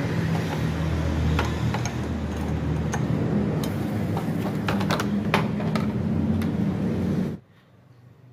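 Clicks and light rattles from a screwdriver working loose the fasteners of a motorcycle's plastic front cover, with the cover being handled and lifted. Under them a steady low engine-like hum runs throughout and stops abruptly near the end.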